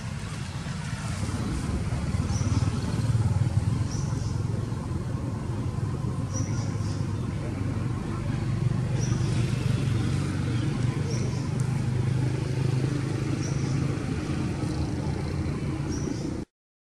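A steady low engine hum, as of a motor vehicle running nearby, builds about a second in and holds. Short high chirps sound every second or two above it.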